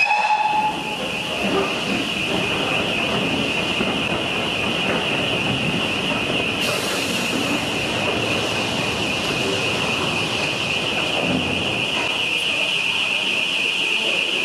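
Steam-hauled passenger coaches rolling slowly along the platform amid hissing steam, with a steady high-pitched ring running through it and a brief whistle note at the very start. The train comes to a sudden stop near the end.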